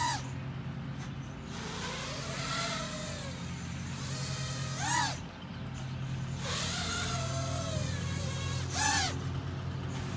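Small quadcopter's electric motors and propellers buzzing overhead, the whine swooping sharply up and back down near the start, about five seconds in and again near the end as the throttle is punched, with gentler swells in between.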